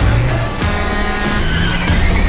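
Loud trailer music with a supercar's engine accelerating hard, both coming in suddenly at once.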